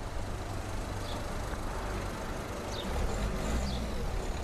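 Car driving slowly past through a car park, its engine and tyres growing louder near the end as it comes close. A few short bird chirps sound over it.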